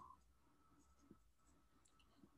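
Near silence: room tone with a few faint taps and scratches of a stylus writing on a tablet.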